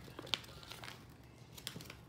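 Faint crinkling and rustling of a printed plastic candy-toy packet being opened by hand, with its folded paper insert drawn out. There are scattered small crackles and a couple of sharper ticks.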